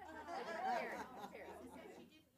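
Faint, off-microphone voices of audience members talking over one another, softer than the presenter's voice.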